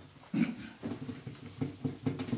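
Whiteboard eraser rubbed back and forth across the board in quick strokes, giving a low, squeaky rubbing with one stronger stroke about half a second in.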